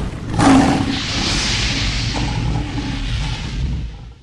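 Cinematic logo-intro sound effects for a fire animation: a hit about half a second in, then a long rushing whoosh over a low rumble that drops away suddenly near the end.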